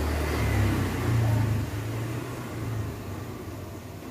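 Low engine rumble that swells over the first second and a half, then fades away.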